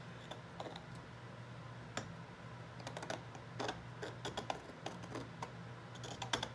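A pointed metal pick scratching and picking at thick paint on a hardboard panel: a run of small irregular scratches and clicks that gets busier after about three seconds. A steady low hum runs underneath.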